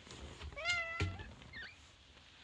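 Domestic cat meowing: one drawn-out meow about half a second in, then a short, higher chirp-like call.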